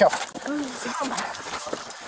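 Footsteps and the rubbing and knocking of a body-worn camera jostled against clothing while officers walk someone along, with short bits of voice in between.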